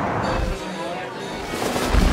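Produced commercial soundtrack: a noisy, hissing city ambience gives way to quieter music, and a deep booming hit lands near the end.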